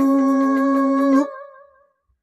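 A singer's long held closing note of the song over the backing track, steady in pitch, which stops about a second in and fades away to silence.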